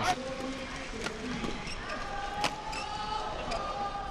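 Badminton rackets striking the shuttlecock in a fast doubles rally: several sharp hits about a second apart, the loudest about two and a half seconds in. Shoes squeak on the court in drawn-out high squeals through the second half.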